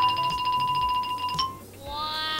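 Comedy sound effects laid over the picture: a steady, rapidly pulsing buzz-like tone for about a second and a half that stops with a click, then a tone that slides down in pitch near the end.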